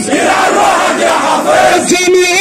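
A crowd of protesters chanting in unison, many voices shouting together.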